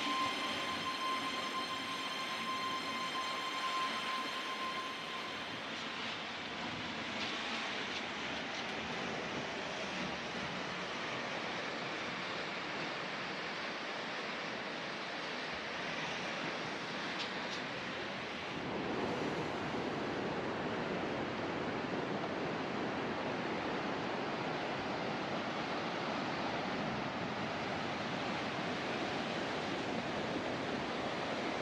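Steady wash of sea surf breaking on the shore, with the tail of background music fading out over the first few seconds. About two-thirds of the way through the surf grows fuller and lower.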